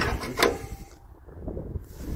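A spirit level scraping and knocking on a corrugated galvanized steel culvert pipe as it is shifted along it, two short scrapes in the first half second. Low wind rumble on the microphone.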